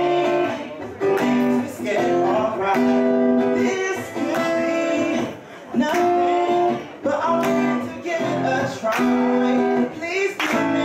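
Acoustic guitar strummed and picked, accompanying a man singing long held notes into a microphone.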